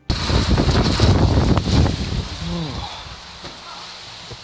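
Heavy thunderstorm rain pouring down in a dense, steady rush. It starts suddenly, is loudest for the first two seconds, then eases somewhat.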